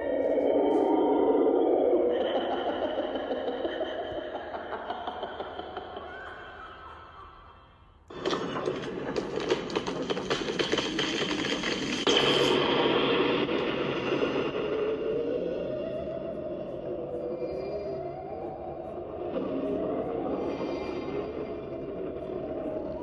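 Lightsaber soundfont sounds from a Proffie saber's speaker, with a music-like quality. An eerie wavering tone fades out over about eight seconds, then a sudden, denser crackling sound with wavering tones starts and carries on.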